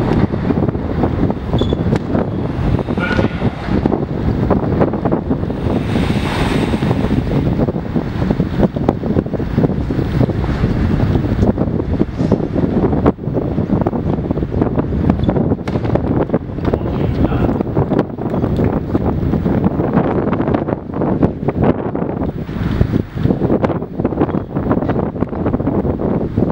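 Wind buffeting the camera's microphone: a loud, continuous rumble.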